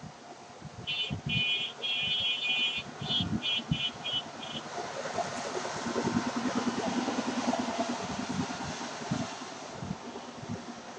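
Background street noise: a string of short, high beeps in the first half, then a motor vehicle passing, louder in the middle of the second half.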